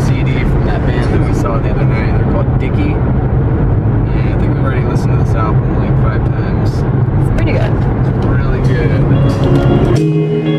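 Steady road and engine noise inside a car cabin at highway speed, with indistinct voices mixed in.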